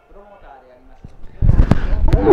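Faint speech from the old fight broadcast, then about one and a half seconds in a sudden loud burst of noise and sharp clicks close to the microphone.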